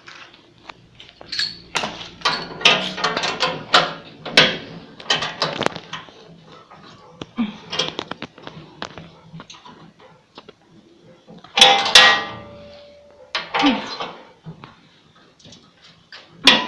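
Metal clinks, taps and knocks of a wrench on bolts and nuts as a skid is fastened to the steel deck of a petrol flail mower, with a louder ringing clank near the end.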